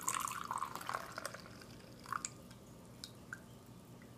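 Brewed tea poured from a plunger tea press into a glass cup: a steady pour for the first second or so that thins out into scattered drips as the last of the tea drains from the press.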